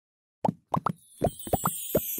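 Cartoon plop sound effects in a quick run: about eight short bloops, each dropping in pitch, starting about half a second in after silence.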